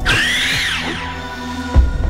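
Dramatic film music under a whooshing sound effect for a fire attack, which rises and then falls in pitch over the first second. A loud impact hit lands near the end.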